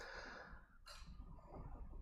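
Near silence with faint breathing close to a clip-on lapel microphone: a soft exhale at the start and a short breath about a second in.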